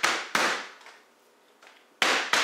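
Meat pounder striking boneless, skinless chicken breasts to flatten them: two sharp blows in quick succession at the start, then a faint knock near the end.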